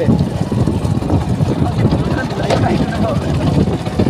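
Motorcycle engine running while the bike is ridden, a dense steady low noise, with faint voices briefly in the background.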